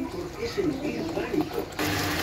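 A quiet voice, then near the end a sudden steady hiss of white-wine sauce boiling hard in a pot of pork loins, the wine cooking off.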